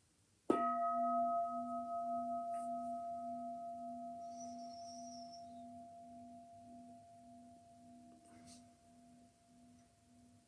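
Meditation singing bowl struck once about half a second in, then ringing and slowly fading. Its low hum pulses about twice a second under steadier, higher tones.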